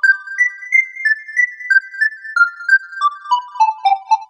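Yamaha FB-01 FM synthesizer sound module playing a patch as a run of single bright, bell-like notes, about three a second. The run climbs to a peak about a second in, then steps back down.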